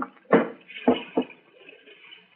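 Radio-drama sound effects: three knocks and clunks, spaced roughly half a second apart, then a faint hiss. They are heard as the boat's engine is being checked over.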